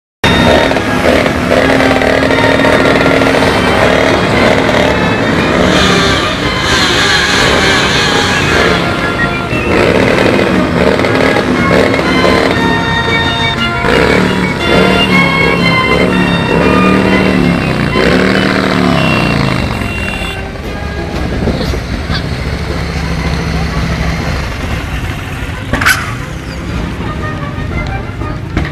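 Many motorcycle engines running together, with riders repeatedly revving them so the pitch climbs and falls about once a second. After about twenty seconds they settle to a lower, steadier idle. A short sharp noise comes shortly before the end.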